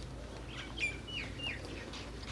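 A bird chirping: three or four short, high notes that fall in pitch, in quick succession about a second in.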